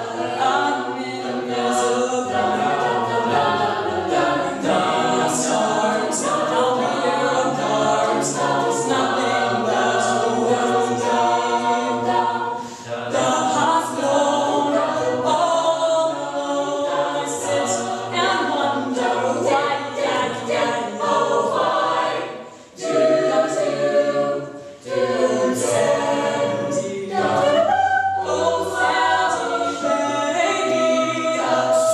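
College a cappella group singing, with a lead voice at a microphone over the ensemble's backing vocals and no instruments. The singing is continuous apart from two brief breaks a little past the middle.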